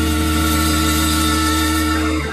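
Progressive rock band recording playing a sustained held chord, its notes ringing steadily over a strong low bass.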